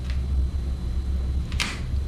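A metal can of Deltron DBC500 clear being handled on the mixing bench as it is opened and lifted: a faint click at the start and a short, sharp scrape about one and a half seconds in, over a steady low hum.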